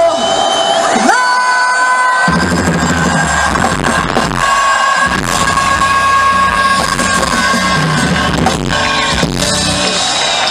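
Loud live pop music over a concert sound system, heard from among the audience, with long held notes. About a second in a rising sweep leads into a short break in which the bass drops out; it drops out briefly a second time about four and a half seconds in.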